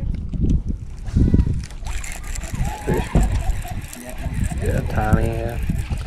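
A hooked green sunfish splashing at the lake surface while it is reeled toward the boat, over wind rumbling on the microphone, with short excited calls from the anglers.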